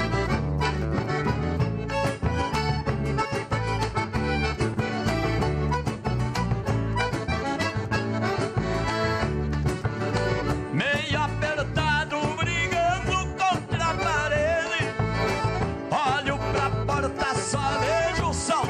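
Instrumental break of gaúcho folk music: a piano accordion plays the melody, with quick ornamented runs about two-thirds of the way through. A hide-headed drum struck with a stick keeps a steady beat underneath.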